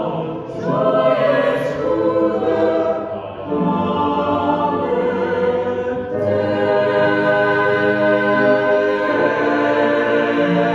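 Mixed choir singing a cappella in long held chords, with a short break about three seconds in before the next phrase.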